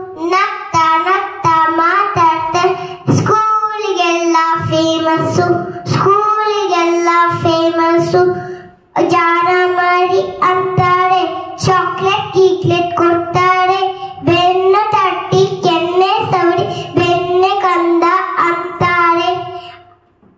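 A young girl singing solo into a handheld microphone, unaccompanied, in a clear held voice with a short pause for breath about nine seconds in.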